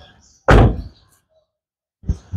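Rear sliding door of a 2014 Toyota Noah minivan shutting with a single loud thud about half a second in, dying away quickly.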